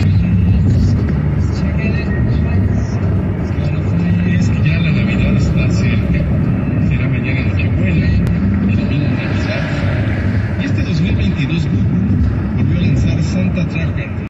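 Steady road and tyre noise inside a car cruising at freeway speed, a continuous low rumble, with muffled voices underneath.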